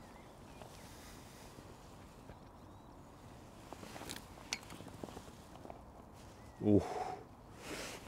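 Faint, still outdoor background with a few soft clicks about four seconds in, then a man's 'ooh' near the end.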